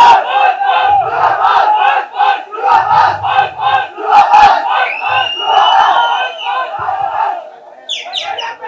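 An audience crowd cheering and chanting in a rhythm of about three shouts a second, with a drawn-out whistle about five seconds in.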